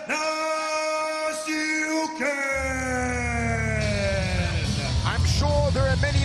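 Ring announcer shouting the winner's name, 'Timofey Nastyukhin!', with the last syllables held for several seconds and sinking slowly in pitch. About two and a half seconds in, music with a heavy pulsing bass starts up underneath.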